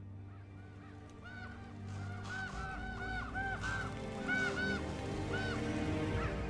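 A flock of corvids cawing: short, arching calls repeated many times from about a second in, growing louder. Soft background music with sustained low tones runs underneath.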